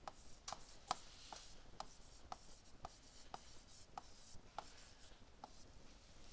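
Faint light taps of a stylus pen on a tablet screen during handwriting, about two ticks a second.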